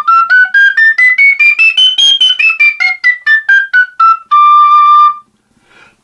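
Three-hole metal tabor pipe played in a quick run of short tongued notes climbing a full scale and straight back down, ending on one longer held low note. The scale is built from overblown overtones with different finger holes open.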